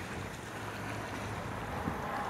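Wind rushing on the microphone over a steady low engine hum, with a brief thump near the end.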